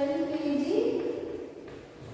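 A high-pitched voice in drawn-out, sing-song syllables, like chanted recitation, stepping up in pitch partway through and trailing off near the end.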